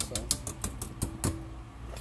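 Wire whisk clicking rapidly against the sides of an enamelled pot of broth as it stirs, about eight clicks a second, stopping a little over a second in.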